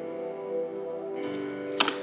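Playback of a minor-key chord progression from FL Studio: sustained piano chords over a soft synth pad, with a new chord coming in a little over a second in. The piano notes hit hard, at a high velocity that is too strong for the soft, emotional track. A couple of sharp clicks come near the end.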